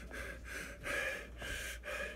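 A man breathing heavily in and out close to the microphone, quick audible breaths about two a second.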